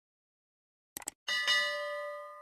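Subscribe-button sound effect: two quick mouse clicks about a second in, then a notification bell dinging, struck again a moment later, ringing on and slowly fading.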